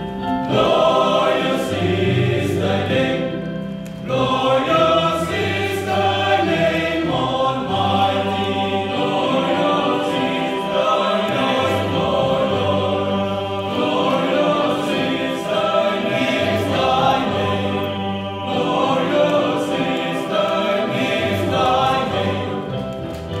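Male choir singing together in harmony without a break, the low voices holding long sustained notes under the moving upper parts.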